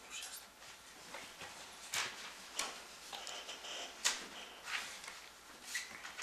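Scattered small knocks, clicks and rustles from people handling pens, papers and tablets at a meeting table in a quiet room, about half a dozen sharp ones spread through the stretch.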